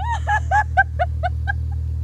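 High-pitched laughter, a quick run of about seven short "ha"s that fade out, over the steady low hum of an idling engine.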